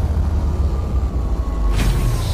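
Intro sound effects: a deep, steady rumble with a faint tone gliding slowly downward, and a whoosh near the end.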